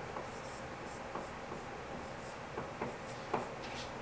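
Dry-erase marker writing on a whiteboard: a run of short, separate pen strokes as a term of an equation is written out.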